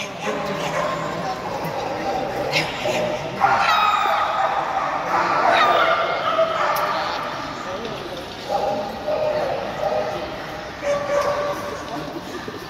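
A dog yipping and whining again and again over background talk.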